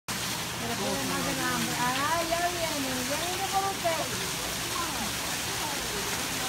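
A steady rush like running water, with a person's voice in high, gliding tones through the middle.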